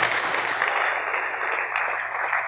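A congregation applauding, a steady even clapping.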